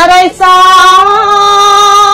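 A woman's solo voice chanting Khmer smot, Buddhist verse sung without words broken into speech: a short break about a third of a second in, then one long held note.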